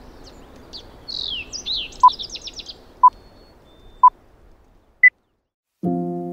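Countdown timer beeps: three short beeps a second apart, then a fourth, higher beep, marking the end of the break countdown. Birds chirp over a steady outdoor ambience before the beeps, and lofi piano music starts just before the end.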